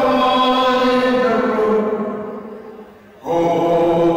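A man singing solo and unaccompanied in long, drawn-out notes. The first note is held and then fades away a little after halfway, and a new note begins about three seconds in.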